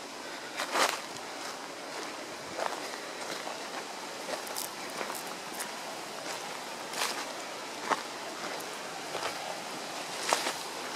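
Footsteps on a forest trail, a few scattered steps and snaps standing out over a steady background hiss.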